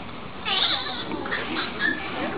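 Caged monkeys calling: a high, wavering squeal about half a second in, then a few short, high chirps near the end.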